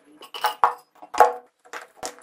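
A few metallic clinks and knocks of motorcycle engine parts being handled on a wooden workbench, the loudest a little after a second in.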